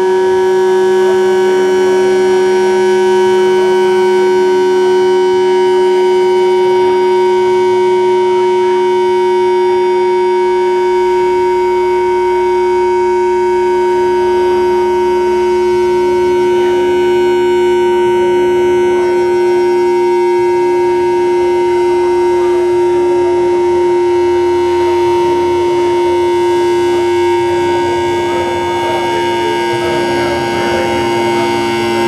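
Live electronic drone music: a loud, unchanging drone of several sustained tones held together, with a grainy, crackling texture underneath.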